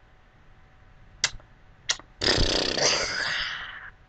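A woman's long, raspy, strained vocal noise, nearly two seconds, about as loud as her speech. It comes after two brief sharp sounds and fades out near the end.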